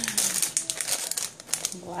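Plastic packaging crinkling and crackling as bagged craft supplies are handled, a quick run of crackles.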